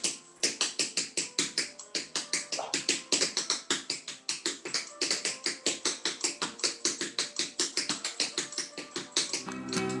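Flamenco footwork (zapateado): dance shoes striking a hard floor in a rapid, even rhythm of about seven heel and toe strikes a second. Strummed flamenco guitar comes in near the end.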